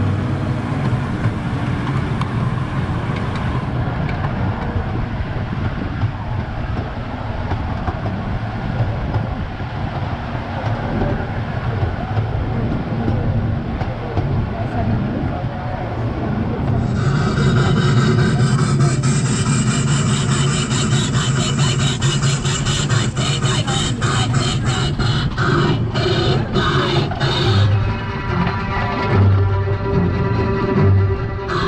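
The Casey Jr. Circus Train rolling along its track, a steady rumble and rub of wheels on rails, with the ride's recorded music playing over it and growing louder and brighter about halfway through.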